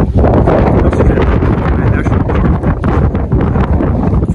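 Strong wind buffeting the camera's microphone: a loud, uneven low rumble.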